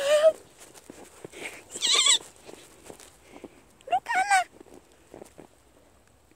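A toddler's high-pitched wordless squeals, three short ones about two seconds apart, the first rising in pitch. Between them, faint crunching of small steps in snow.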